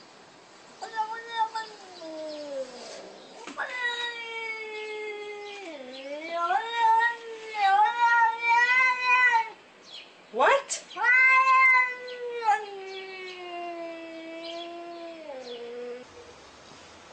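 A cat yowling in long, drawn-out meows that waver up and down in pitch: a short call about a second in, a long call lasting several seconds, a brief rising squeak, then another long call that slides down in pitch near the end.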